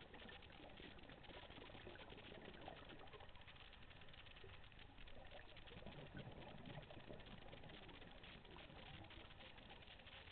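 Faint underwater ambience picked up through a dive camera's housing: a steady, dense crackle of tiny clicks, with low muffled swells near the middle.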